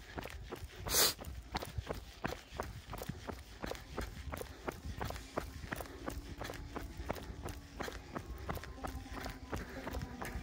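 Running footsteps on an asphalt road, about three strides a second, from the runner carrying the camera. A short noisy burst comes about a second in.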